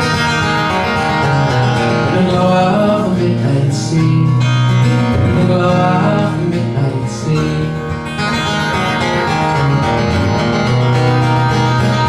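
Acoustic guitar played solo through an instrumental passage of a folk song, amplified through the club's sound system.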